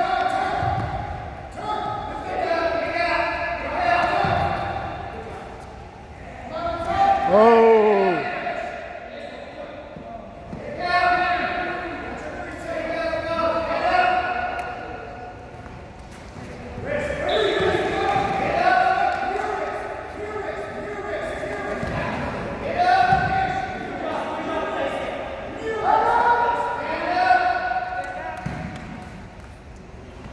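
Coaches and spectators shouting in an echoing gym, with repeated yells through the whole stretch and one long falling shout about seven seconds in. Occasional low thuds come in among the shouts.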